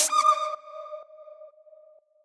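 The last note of an electronic house track, a lone held synth tone, ringing on by itself and fading out over about a second and a half.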